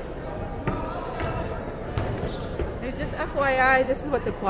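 A basketball bouncing a few times on a gym floor, with voices echoing through the hall. A loud, drawn-out, wavering call from a voice comes near the end.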